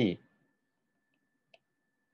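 Near silence after the end of a spoken word, with a faint steady high whine and a single short click about one and a half seconds in: a stylus tapping a writing tablet as the handwriting goes on.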